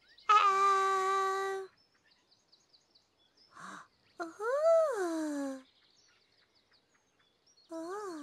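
A Teletubby's high, childlike voice making wordless sounds: a long held 'ooh' near the start, then a rising-and-falling wondering 'oh' in the middle, with a short sound just before the end. Birds chirp faintly in the background.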